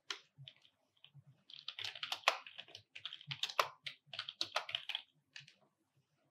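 Typing on a computer keyboard: a quick run of keystrokes entering a line of text, stopping shortly before the end.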